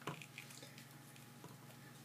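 Near silence: faint room hum with a small click just at the start and a few tiny ticks from handling the plastic toy helicopter and its charging plug.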